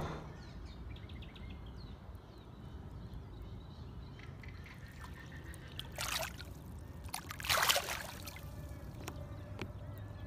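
Lake water sloshing and trickling as a barramundi is released in the shallows, with two short splashes about six and seven and a half seconds in, the second louder, over a low steady rumble.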